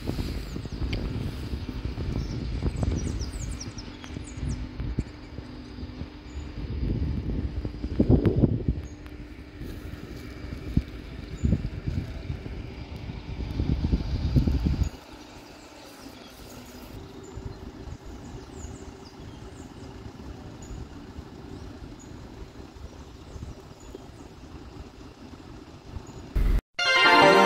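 Wind buffeting the microphone outdoors, a gusty low rumble over a faint steady hum. About fifteen seconds in it drops suddenly to a quieter, steady outdoor background with a few faint high chirps.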